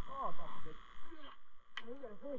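A person's voice, indistinct and muffled, in a few short rising-and-falling syllables, with a sharp click near the end.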